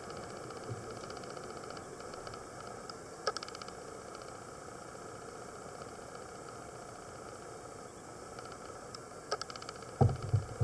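Steady low hiss with two short clicking rattles, about three seconds in and near the end, from the plastic of a diving mask and snorkel being handled.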